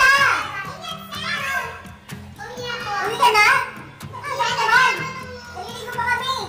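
Several people talking and calling out excitedly, with shrill, playful voices, over background music.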